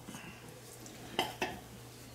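A spoon clicking against a bowl as noodles are stirred and lifted, with two sharp clicks a little past the middle.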